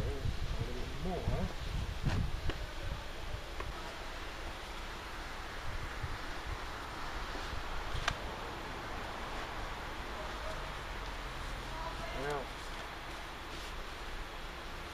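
Denim jeans rustling and rubbing as they are worked up over a foam pool noodle on a PVC pipe leg, over a steady background hiss, with a sharp click about two seconds in and another about eight seconds in.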